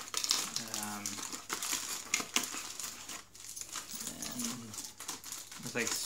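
Plastic packaging crinkling, with light clicks and rattles as the small brackets, screws and clips of a CPU cooler's mounting kit are handled. A brief murmured voice comes in about half a second in and again about four seconds in.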